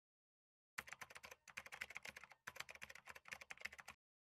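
Keyboard typing sound effect: rapid clicking keystrokes starting about a second in, in two runs with a short break about halfway.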